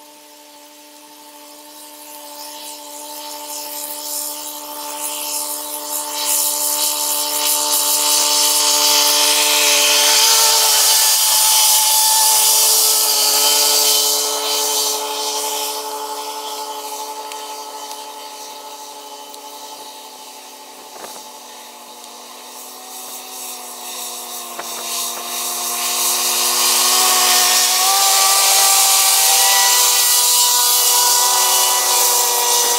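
Tractors running tractor-driven grass mowers through standing grass: a steady engine-and-mower whir with several fixed tones and a high hiss. It grows loud as a machine passes close around ten seconds in, fades away, then builds loud again near the end as more mowing tractors come past.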